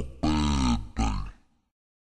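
Slowed-down, deep-pitched male rap vocal from a chopped-and-screwed freestyle, two drawn-out syllables, then the audio ends about one and a half seconds in.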